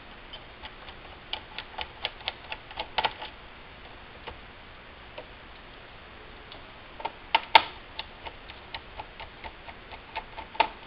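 Light, sharp clicks, about four a second, from a small screwdriver working screws out of a laptop's plastic base. They come in two runs, one about a second in and one from about seven seconds in, and the loudest click falls in the second run.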